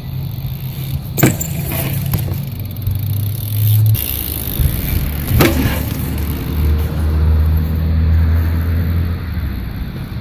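BMX bike riding on a concrete skate park: a steady low rumble of rolling, broken by two sharp knocks of the bike hitting the concrete, about a second in and again at about five and a half seconds.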